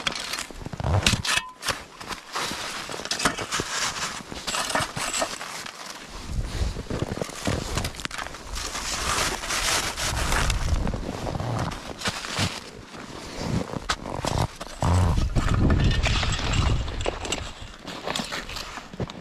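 Hard, crusty snow crunching and scraping as a compact shovel digs out chunks and packs them around a buried trap, in many irregular crunches and knocks. A low rumble runs under it from about six seconds in.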